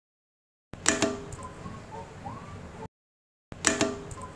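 Two sharp clicks close together, then a faint hiss with a few faint short tones and one rising tone. The short sound cuts off abruptly and begins again the same way about half a second later.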